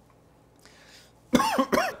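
A man coughs twice in quick succession, the first about a second and a half in and the second just after it, near the end.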